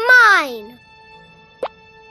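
A short wordless cartoon voice sound, rising then falling in pitch, over soft held music notes, followed by a single quick plop sound effect about a second and a half in.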